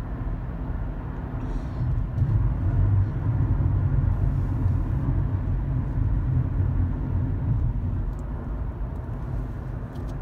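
Road and engine noise inside a moving car's cabin: a steady low rumble that grows a little louder about two seconds in and eases off again near the end.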